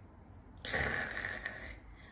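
A woman's audible breath, about a second long, taken in a pause in her speech.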